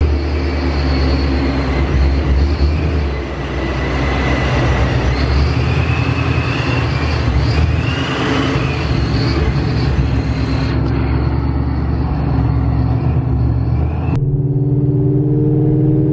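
Supercharged 5.0 V8 of a 2019 Mustang GT fitted with a Vortech V3 blower, running as the car drives off gently to log data on a fresh tune, with a faint whine rising and falling in the middle. About two seconds from the end it changes to a steadier engine drone heard from inside the cabin while cruising.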